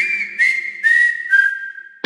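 A break in rock background music: a whistle-like melody of four notes stepping down in pitch, each sliding up into its note, about two a second, with a light tick on each beat.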